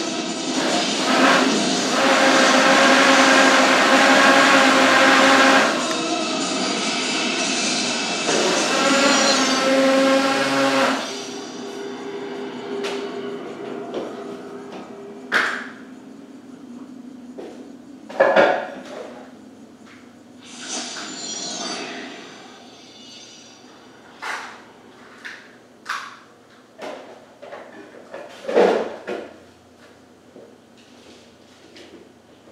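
Movie trailer soundtrack played from a VHS tape through a TV: loud sustained orchestral music for about the first eleven seconds, then a quieter stretch broken by a series of short, sudden swelling hits.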